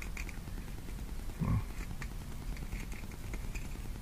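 Faint, scattered clicks of steel trace wire and a hook being handled as a loop through the hook eye is adjusted, with one brief low vocal sound about a second and a half in.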